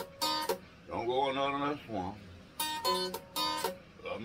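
Ukulele strummed in short, sharp chords, with a man singing a held line between the strums about a second in.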